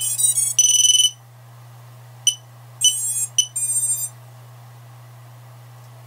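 Micro brushless FPV quadcopter beeping as its battery is plugged in, its power-up tones: a quick run of high stepped tones and a longer high beep in the first second, then a short beep and two more bursts of beeps a few seconds in.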